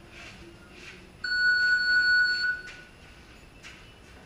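One long electronic beep, a single steady high tone that starts sharply a little over a second in and stops about a second and a half later: a boxing round timer signalling the start of a round.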